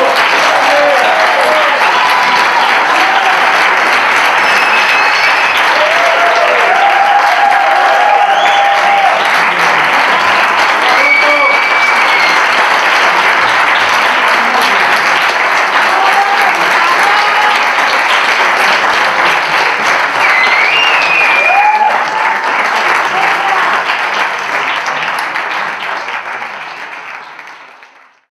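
Concert audience applauding steadily, with a few voices calling out over the clapping; the applause fades out near the end.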